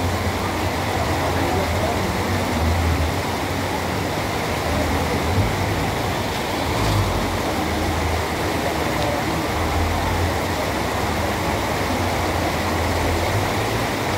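Floodwater rushing and churning along a street gutter in a steady torrent.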